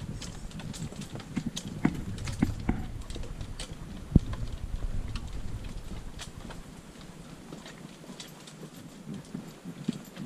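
Footsteps on a wooden boardwalk: irregular knocks and clicks on the planks, with one sharper knock about four seconds in, growing fainter near the end.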